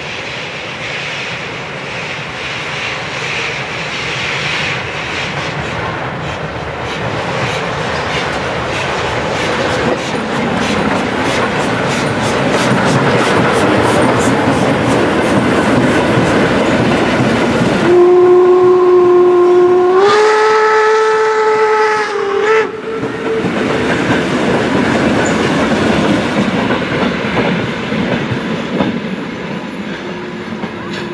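A steam-hauled passenger train comes up and passes close by, its wheels clattering in a steady rhythm over the rail joints. About eighteen seconds in, the locomotive's steam whistle sounds a long blast that steps up in pitch partway through and cuts off after four or five seconds, and then the coaches roll on past.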